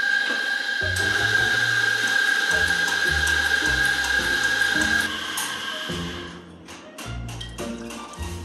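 An electric espresso grinder runs with a steady motor whine as it grinds coffee beans for a grind-size setting, then stops about five seconds in. A few short clicks and taps follow near the end, over background music.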